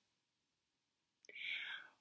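A woman's short intake of breath through an open mouth, lasting about half a second, coming after about a second of near silence.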